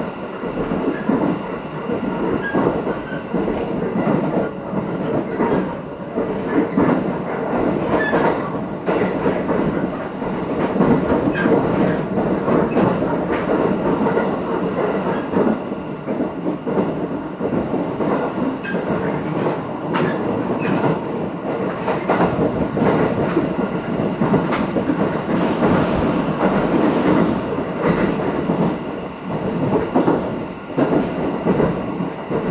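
Electric commuter train running, heard from inside the passenger car: a steady rumble of wheels on the rails with repeated sharp clacks over rail joints.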